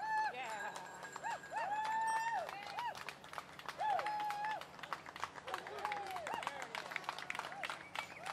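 A high-pitched voice calling out repeatedly in long, drawn-out cries to catch a German Shepherd's attention as it is gaited, over the quick patter of running on grass.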